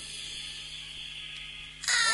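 Steady hiss and hum of a live rave tape recording with no beat playing. Near the end a loud voice cuts in suddenly.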